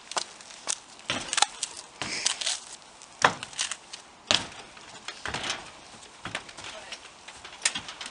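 Percheron mare's hooves knocking on the ramp and floor of a horse trailer as she walks aboard: irregular single strikes, the loudest about three and four seconds in.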